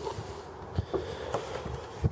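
Car hood being unlatched and lifted: a short knock just under a second in and a fainter one shortly after, over low outdoor background noise.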